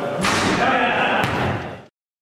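A basketball hits the hoop with a sudden bang about a quarter of a second in, with voices echoing in a gym. A second sharp knock comes about a second later, and then the sound cuts off abruptly.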